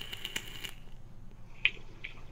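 Vape coil crackling and sizzling as an e-cigarette is fired and drawn on, in a run of fine crackles that stops under a second in. A single sharp click follows near the end.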